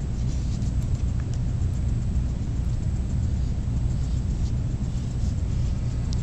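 Steady low background rumble, even throughout, with a few faint ticks above it.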